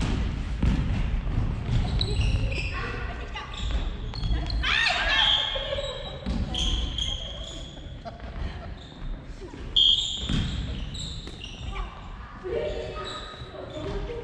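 Rackets hitting a family-badminton shuttlecock back and forth in a doubles rally, a string of short knocks echoing in a large gym hall, mixed with players' voices calling out.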